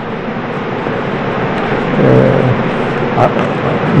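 Steady background noise of a crowded hall, people moving and murmuring, with a brief man's voice about two seconds in.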